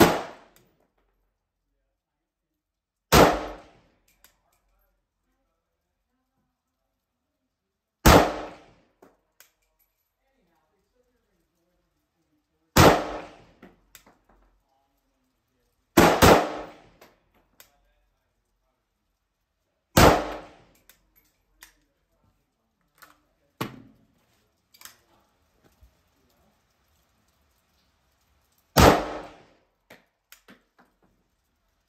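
A WASR AK rifle fitted with a KNS adjustable gas piston, fired slowly in semi-auto: seven single shots several seconds apart, two of them in quick succession about halfway through. Each shot has a short echo, and fainter clicks follow some of them.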